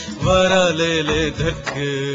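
Music: a man singing a folk song in a long, wavering line over a steady low instrumental drone.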